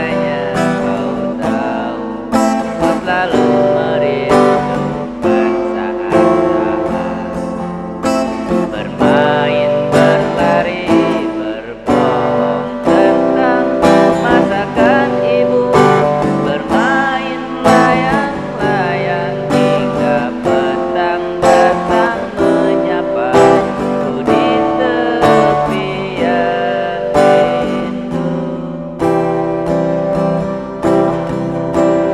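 Acoustic guitar strummed in a steady rhythm, accompanying a man's singing voice.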